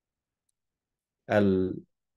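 A man's voice holding one drawn-out hesitation sound, like "aah", for about half a second, starting a little past the middle. Before it the audio is dead silent between words, as on a noise-suppressed video call.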